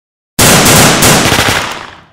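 A loud, sudden burst like gunfire starts about a third of a second in, with a few more sharp hits, then dies away over about a second and a half.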